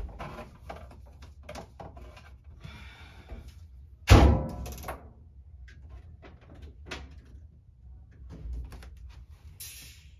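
Clothes handled and small clicks at an Amana top-loading washer, then about four seconds in its metal lid is shut with a loud bang that rings briefly. A few small clicks follow as the control knob is set.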